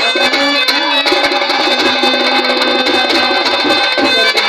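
Live folk band music: a reedy wind instrument plays a sustained, wavering melody over a steady drum beat, with keyboard backing.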